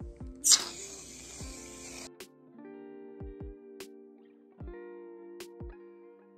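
Aerosol can of Barbasol shaving cream spraying foam: a hiss that starts with a loud burst about half a second in and cuts off suddenly about a second and a half later. Plucked-guitar background music plays throughout.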